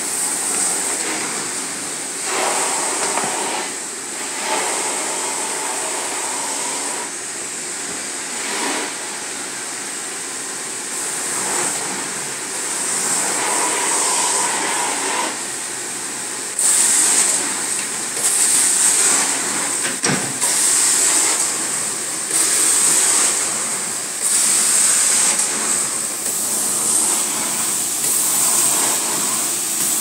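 Carpet-extraction wand hissing steadily as it sucks water out of the carpet. In the second half it grows louder in repeated surges every couple of seconds as the wand strokes across the carpet.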